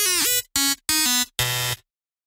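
Short electronic outro jingle: a gliding synthesized note, then three short buzzy tones of steady pitch about half a second apart. The last tone is lower and fuller and cuts off just before the end.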